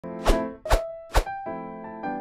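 Intro music: three short percussive hits about half a second apart, then sustained electric piano notes.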